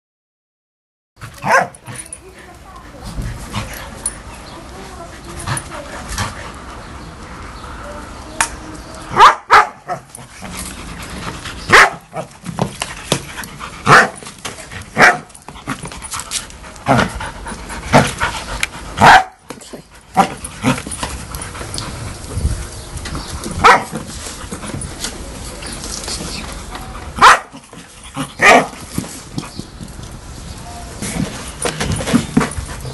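Two dogs barking repeatedly during a game of tug with a Jolly Ball, with sharp loud barks every second or two over a steady bed of noise, starting about a second in.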